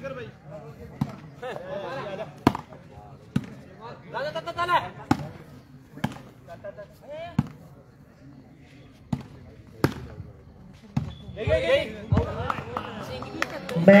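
A volleyball struck again and again by players' hands and forearms during a rally, a sharp slap roughly every one to two seconds.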